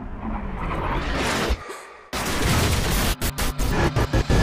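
Film-trailer sound effects: a rising rush of noise that breaks off about a second and a half in, then from about two seconds a loud, dense run of booms and crashing impacts.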